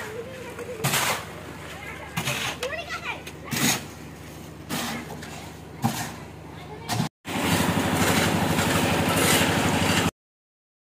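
Workers' voices with a few sharp knocks. Then, after a sudden break, a drum concrete mixer's engine runs loudly and steadily with a fast even pulse.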